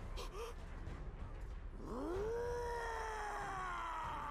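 A man's long, drawn-out scream from the anime soundtrack, starting about two seconds in, rising in pitch and then slowly sinking as it is held.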